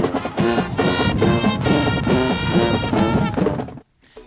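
Marching band playing: brass (trombones and mellophones) over snare drums and crashing cymbals, loud and full, cutting off abruptly just before the end.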